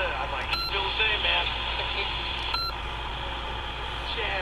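An AM broadcast station talking through the small built-in speaker of a C.Crane CC Pocket radio, muffled and thin, over a steady background hiss and hum. The radio's narrow AM filter is switched on. Two short beeps sound, about half a second in and again about two and a half seconds in.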